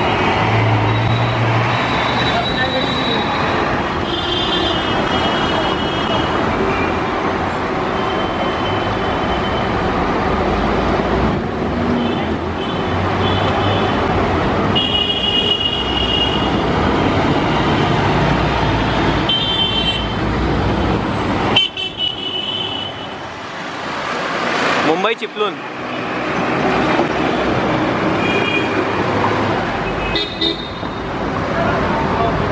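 Dense city road traffic: engines running and tyres on the road, with many short horn honks from the surrounding vehicles. A coach bus drives close past at the start.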